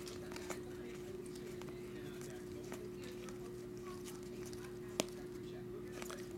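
Glossy trading cards handled and flipped through in a stack, giving scattered faint clicks and light card-on-card contact, with one sharper click about five seconds in. A steady low hum runs underneath.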